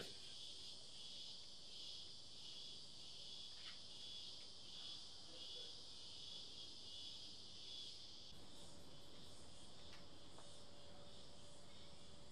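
Faint, steady high-pitched insect chorus, with a couple of faint small ticks.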